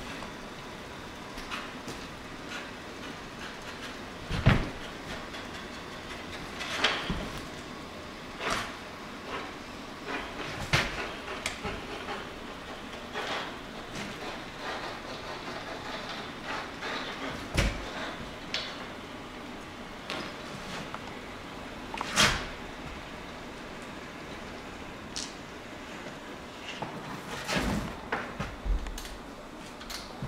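Virutex PEB250 portable edgebander running steadily as it feeds edge banding tape along a panel edge, with scattered knocks and clacks.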